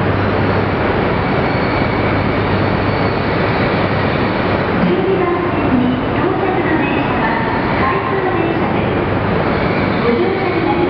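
Coupled E3 and E5 series shinkansen train rolling slowly along a station platform: a steady running noise with a low hum underneath.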